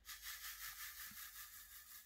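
Faint, scratchy rhythmic rubbing at about five strokes a second.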